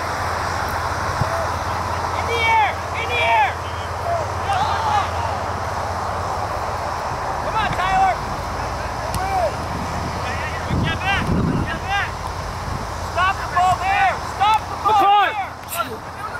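Short shouts and calls from soccer players and spectators across an open field, coming in clusters and busiest in the last few seconds, over a steady low rumble of wind and ambience.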